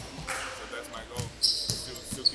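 Basketballs bouncing on a gym floor, dull thumps about twice a second, with a short high squeak about one and a half seconds in.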